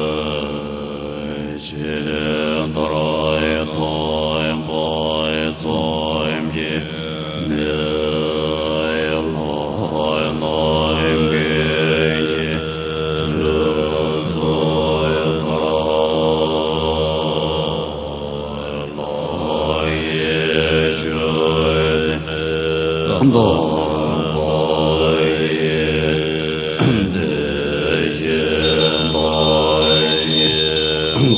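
A large assembly of Tibetan Buddhist monks chanting liturgical verses in unison, deep voices in a slow, steady recitation. A high ringing, from the chant leader's hand bell, joins near the end.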